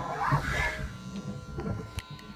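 Steady electrical buzz and mains hum from an idle electric guitar amplifier and PA in a small rehearsal room.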